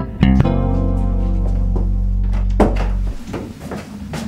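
Sitcom theme music ending on a long held chord that cuts off about three seconds in.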